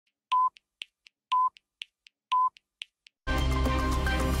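On-screen countdown clock's time-signal beeps: three short, steady-pitched pips one second apart, with light ticks between them about four to the second. A little over three seconds in, the news theme music starts in full.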